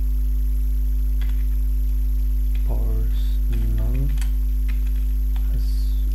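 Steady electrical mains hum with scattered computer keyboard key clicks as text is typed. A brief low mumbled voice comes in about three seconds in.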